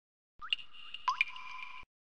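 Logo-intro sound effect: two quick upward-gliding blips about half a second apart, each leaving a steady high ringing tone, cutting off suddenly just before speech begins.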